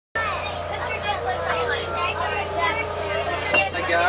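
People chatting inside a passenger railcar over a steady low hum, with a sharp click near the end.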